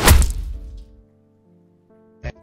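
An edited-in comedy sound effect: one loud thud right at the start, with musical tones ringing on and fading out within about a second.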